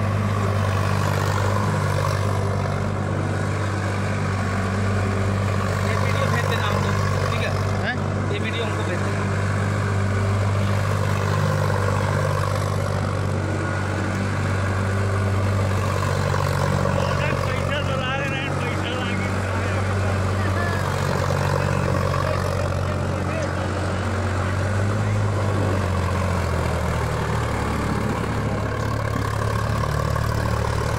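Sonalika 745 III Sikander tractor's three-cylinder diesel engine running steadily under load while driving an SL 200 rotavator that tills dry soil. The engine note drops a little near the end.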